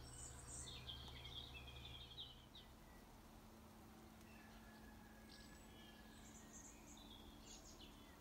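Faint birdsong: small birds chirping, with a short trill in the first couple of seconds and scattered high chirps near the end.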